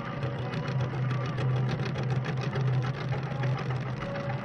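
Concert cimbalom played with mallets: a fast, dense run of repeated strikes on the strings over a steady ringing low note.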